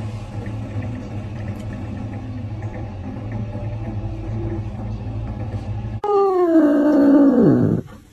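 A steady low hum for about six seconds, then, after a sudden cut, a loud drawn-out call that slides down in pitch for nearly two seconds.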